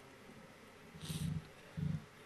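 Faint room tone during a pause in chanted recitation, then two short, soft breathy sounds into the microphone, one about a second in and a briefer one near the end, as the preacher draws breath before the next phrase.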